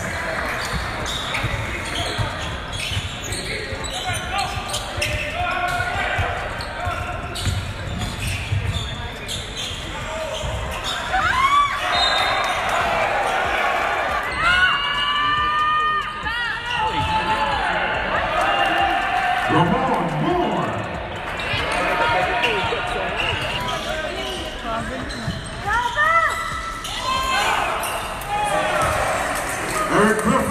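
Live basketball play in a large gym: a ball bouncing on the hardwood court and sneakers squeaking sharply several times, over the steady murmur of spectators' voices echoing in the hall.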